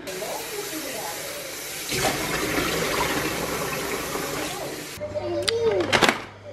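Kitchen tap running in a steady stream, fuller from about two seconds in, cut off abruptly near the end.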